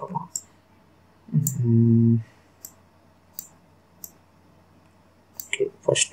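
Single computer mouse clicks, faint and spaced about a second apart, with a short held hum ('mmm') from a man's voice about a second and a half in.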